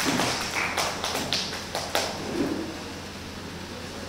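About seven sharp, irregular taps over the first two seconds, then they stop, leaving a steady low background hum.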